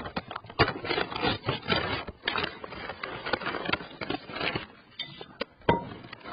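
A plastic bag of tortilla chips being pulled open and handled, with a string of irregular crinkles and crackles.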